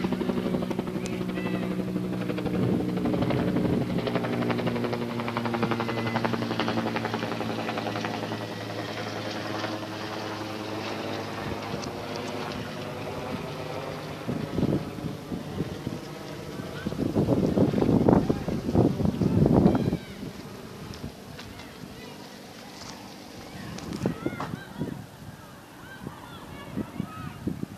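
Bell UH-1H Huey helicopter's turbine and rotors passing overhead, a steady hum that fades away over the first ten seconds or so as the helicopter moves off. Later come a few louder bursts of rushing noise, loudest about two-thirds of the way through.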